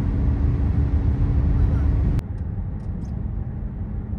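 Road and engine noise inside a moving car at motorway speed, a steady low rumble with a faint steady hum. About two seconds in it cuts off suddenly to a quieter rumble.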